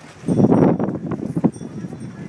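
A gust of wind buffets the handheld phone's microphone in a loud rushing burst about a quarter second in, with quick knocks and rubbing from the phone being handled while carried.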